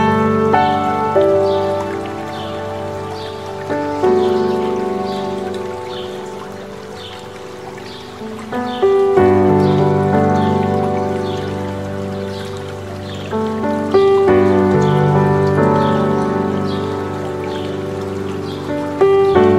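Slow, gentle solo piano playing sustained chords, a new chord struck every few seconds and left to fade, over the steady rush of a mountain stream.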